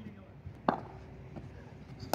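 A single sharp knock about two-thirds of a second in, standing out from a quiet background.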